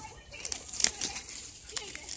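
Leaves and twigs rustling and crackling as a hand pushes through a leafy branch close to the phone. There is a run of sharp clicks, and the loudest comes a little before halfway.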